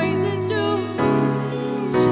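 Live worship song: a woman singing a slow, held melody over sustained keyboard chords, with the chord changing about a second in.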